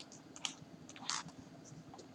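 Dry-erase marker writing on a whiteboard: a few short scratchy strokes, the longest about a second in.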